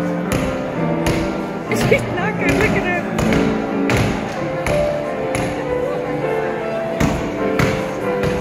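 Hand hammers striking a block of solid chocolate on a cloth-covered table, a run of about ten irregular blows, over live music with held notes and voices in the background.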